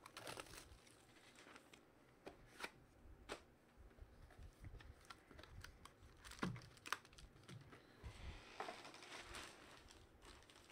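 Faint handling of a cardboard trading-card box and a foil-wrapped card pack: scattered light taps and clicks, then a soft rustle of the foil wrapper near the end.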